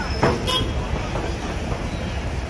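Traffic noise heard from the open top deck of a tour bus: a steady low rumble with wind on the microphone, and a brief high squeal about a quarter of a second in.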